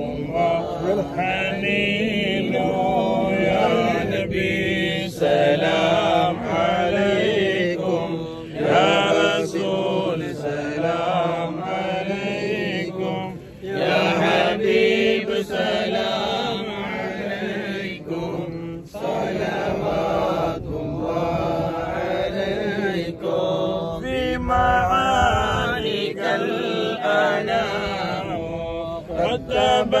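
Men's voices chanting an Islamic devotional recitation in continuous melodic phrases, with short breaks between phrases.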